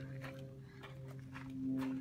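A few footsteps of a person walking, over a steady low hum.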